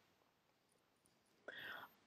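Near silence in a pause between spoken sentences, with a short, faint intake of breath near the end.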